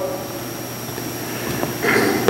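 A pause in speech: steady low electrical hum and room noise through the sound system, with a short breath-like rush just before the voice resumes near the end.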